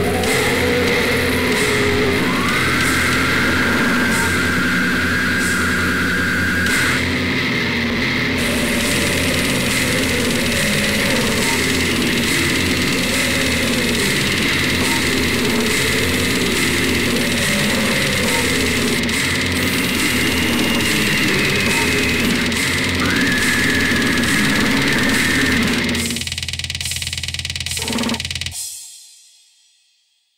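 Slamming brutal death metal: heavily distorted, down-tuned guitars and drums in a dense wall of sound. A high held tone slides up over the riff twice, a couple of seconds in and again near the end. About two seconds before the end the heavy low end drops out, leaving a thinner sound as the track closes.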